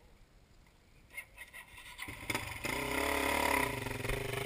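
Dirt bike engine revving hard on a steep climb. It is faint for the first couple of seconds, then opens up loudly about two and a half seconds in, its pitch rising and then falling.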